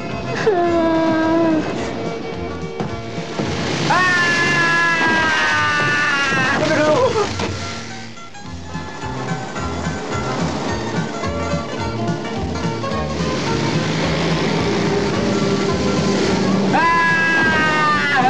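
Film soundtrack music with long held notes that slide down in pitch, the longest lasting about three seconds midway through.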